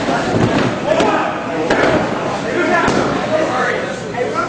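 Voices calling out over a wrestling match, with a few sharp slaps and thuds on the ring about a second in, just before two seconds and near three seconds.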